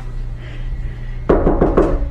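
A quick run of about five knocks on a door, about a second in, over a steady low hum.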